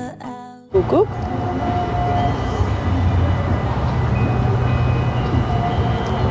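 Background guitar music stops within the first second. After a short loud burst it gives way to a steady low outdoor rumble, with a few faint brief tones over it.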